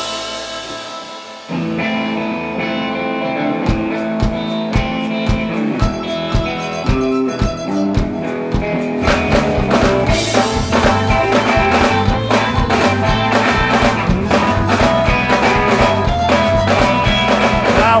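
Live rock band playing an instrumental intro: a held electric guitar chord fades away, then a new guitar riff starts about a second and a half in. A steady drum beat joins soon after, and the full band with cymbals comes in about halfway through, building until the singing starts at the very end.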